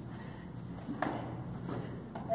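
A person stepping slowly down stairs, with one sharp knock about a second in, over a steady low hum.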